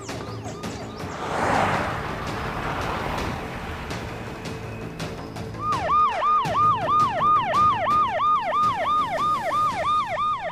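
Police car siren starting about halfway through, a fast repeating yelp: each swoop drops in pitch and rises back, about three a second.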